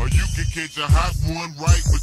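Slowed-down, screwed hip-hop: a rapper's voice over deep bass hits that slide down in pitch.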